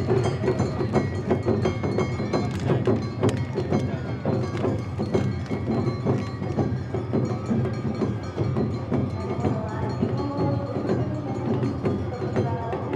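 Awa Odori festival band playing live: taiko drums and metal hand gongs (kane) beating the brisk, steady two-beat Awa Odori rhythm.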